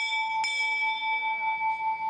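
A metal bell is struck and rings with a clear, sustained tone. It is struck again about half a second in and rings on steadily.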